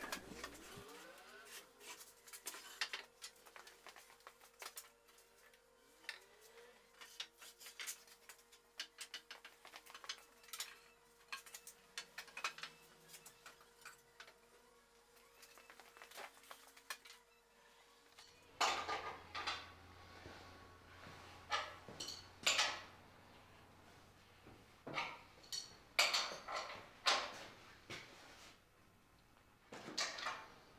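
Iron fittings of a wagon's front gear clinking and knocking against each other and the wood as they are handled and fitted back onto the repaired wooden axle parts. The knocks come irregularly and become louder and more frequent about two-thirds of the way in.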